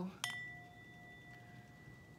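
Small brass singing bowl struck once with a wooden striker about a quarter second in, then ringing on in a steady, slowly fading tone with a lower hum beneath a clearer high ring.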